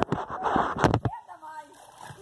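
Water splashing and sloshing loudly for about a second as someone gets into a swimming pool holding the recording phone, followed by quieter voices.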